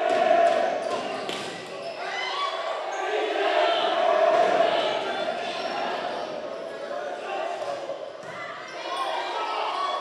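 Indoor volleyball rally: a few sharp hits of the ball over a continuous hubbub of spectators' voices and shouts, echoing in a large sports hall.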